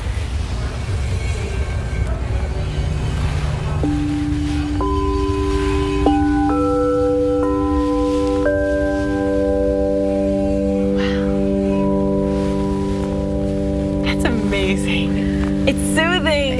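Quartz crystal singing bowls played one after another with suede-covered wands. Each bowl starts suddenly and rings on in a long steady pure tone, and about six bowls come in between roughly four and nine seconds in, building into a sustained chord of overlapping tones.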